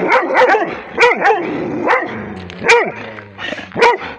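Rhodesian ridgeback barking: a loud run of short barks, several in quick succession at first, then more spaced out, with a last bark near the end.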